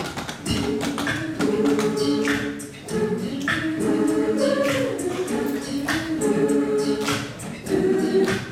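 A large mixed a cappella choir singing unaccompanied, in held chords broken into short phrases.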